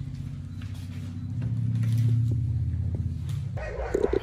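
A low steady hum that swells to its loudest about halfway through and cuts off suddenly near the end, with a few faint clicks.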